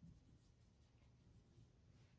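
Faint marker pen writing on a whiteboard: a few soft strokes of the tip over near-silent room tone.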